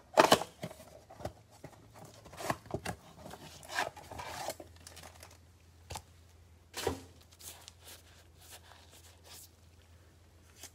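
Cardboard Panini Select blaster box being torn open and handled with gloved hands: a few sudden tearing and rustling sounds, the loudest right at the start, with quiet gaps between.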